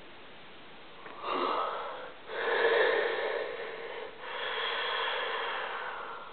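A man making three long sounds in his throat with no words, each one to two seconds long, with brief breaks between them; the middle one is the loudest.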